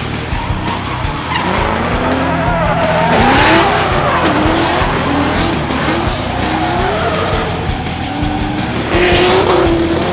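Drift car engine revving up and down as the car slides, with tyre squeal and two louder surges, about three seconds in and near the end, over a background music track.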